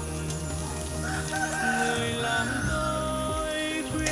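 A slow song plays in the background while a rooster crows once over it: one long call that falls in pitch near its end.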